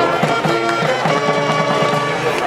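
Marching band playing a short passage: held horn notes over a run of quick repeated low notes.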